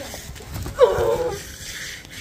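A single short, high-pitched cry about a second in, lasting about half a second.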